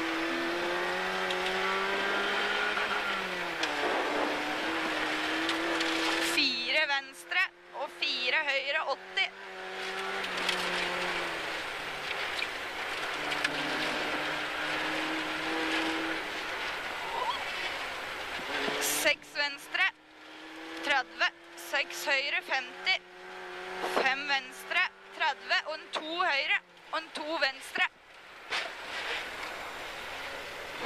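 Rally car engine heard from inside the cockpit, running hard at stage speed. Its pitch holds level for long stretches and drops a few times.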